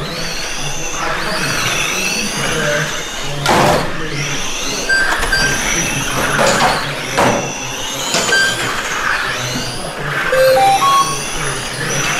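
Electric 1/12-scale GT12 pan cars racing, their motors whining and gliding up and down in pitch as they accelerate and slow for the corners. Short electronic beeps come in now and then, and there are a few sharp knocks.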